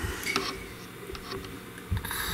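A few light ticks and clicks of handling on an RC plane's rudder linkage, a finger on the plastic control horn and clevis.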